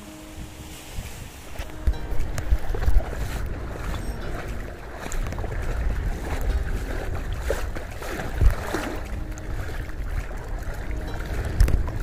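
Wind buffeting the microphone over shallow sea water lapping and sloshing around a wading angler's legs, with a few stronger gusts of rumble, near two to three seconds in and again past eight seconds.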